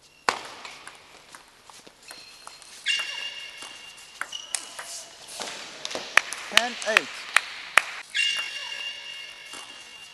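Table tennis ball clicking sharply on bats and table in a quick run of about five hits around two-thirds of the way in, with long high squeaks, typical of players' shoes on the court floor, before and after. A single voice calls "eight" among the hits.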